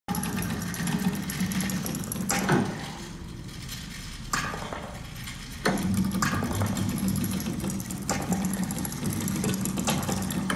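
Soundtrack of a video installation playing in a gallery room: a steady low mechanical hum, with a sharp knock or click every second or two and a quieter lull in the middle.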